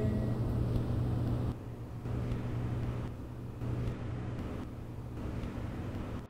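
Steady low rumble and hiss with a faint hum, with no music, dropping slightly in level about one and a half seconds in.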